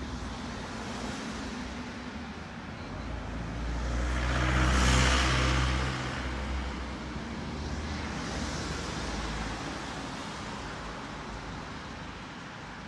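A car passing close by, its engine and tyre noise swelling to a peak about five seconds in and then fading, over steady street traffic noise.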